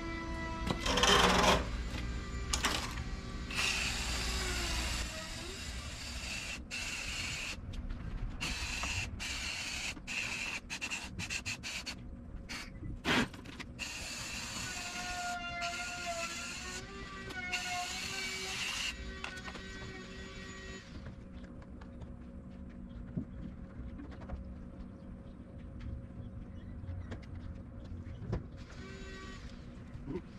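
Garden hose trigger nozzle spraying water onto an evaporator coil in a series of on-and-off bursts, which die away about two-thirds of the way through. Background music plays underneath.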